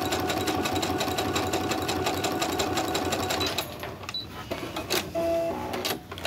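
Brother sewing-and-embroidery machine running steadily at speed, sewing a narrow zigzag stitch with rapid, even needle strokes. It stops about three and a half seconds in, and a few clicks and a brief electronic tone follow.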